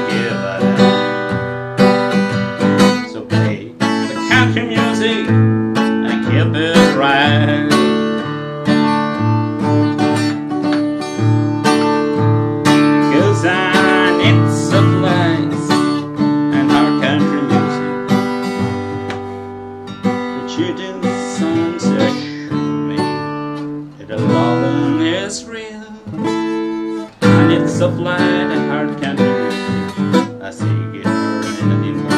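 Harley Benton all-mahogany acoustic guitar strummed and picked in a country song, an instrumental passage of rhythmic chords.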